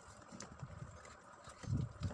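Cardboard firecracker boxes being handled and shifted, with soft, irregular low thumps, the strongest near the end.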